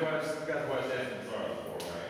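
A man talking, with a brief click near the end.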